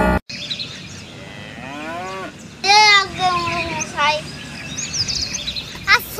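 Cattle lowing: two or three drawn-out moos, the loudest about three seconds in, over open-air background with a faint bird chirp near the end.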